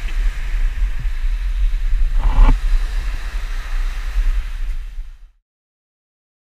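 Wind buffeting an action camera's microphone: an uneven low rumble with hiss, with one brief louder gust or knock about two seconds in. The sound fades and cuts to silence about five seconds in.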